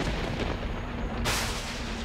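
Dramatic TV score sound effects: a deep rumbling boom under a faint low drone, with a hissing whoosh about a second in.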